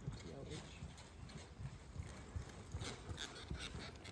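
Horse's hooves thudding irregularly on the soft dirt footing of an indoor arena as it walks up and comes to a halt.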